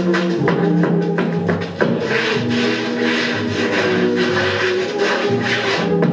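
Film-soundtrack orchestra playing an instrumental dance passage, heard from a 45 rpm vinyl record, with quick sharp percussive clicks through it and a strong one just before two seconds in.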